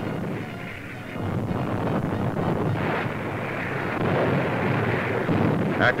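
Steady rumbling roar of distant artillery fire, swelling about a second in.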